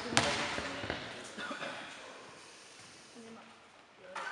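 A basketball bouncing once on an indoor court floor, a sharp echoing thud just after the start, ending a dribble of about two bounces a second before a free throw. Then only faint voices and hall ambience, fading almost to silence.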